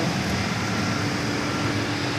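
Cold-room refrigeration unit with a 7 HP compressor running steadily under load while it is charged with R22, a continuous even mechanical hum with a faint steady tone over it.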